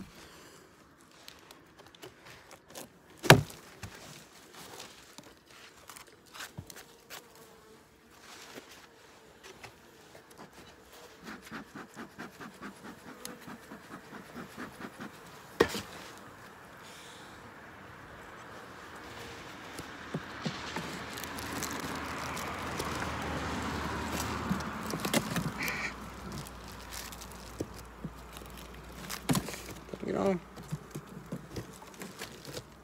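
Honeybees buzzing at an opened hive, with handling noises from the wooden hive parts: a sharp knock about three seconds in and another about halfway. There is a run of quick ticks before the second knock, and a louder scratchy rustle in the last third as dry sugar feed is pushed across the top of the frames.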